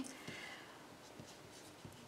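Faint sound of a pen writing on paper.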